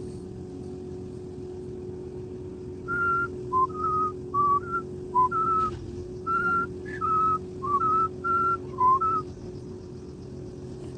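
A person whistling a short tune of about fifteen quick notes, starting about three seconds in and stopping a little before the end, over a steady low hum.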